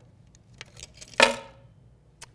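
A set of keys clinking and jingling against a sticky dashboard pad on a tabletop: a few light clicks, then one sharp jingle about a second in, as the keys fail to stick.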